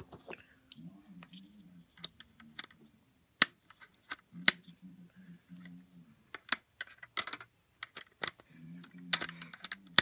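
Snap Circuits pieces being pressed onto the clear plastic base grid: a string of irregular sharp snaps and clicks from the metal snap connectors and plastic parts, several of them loud.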